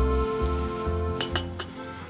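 Background music fading out, then a few light clinks about a second and a half in: a porcelain espresso cup being set down.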